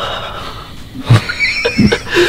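Two people laughing excitedly: a breathy sigh at the start, then from about a second in a high, wavering laugh in short bursts.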